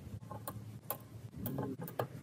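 Metal tweezers and resistor leads clicking against a perforated circuit board as resistors are set in place: about five light, sharp clicks, unevenly spaced roughly half a second apart.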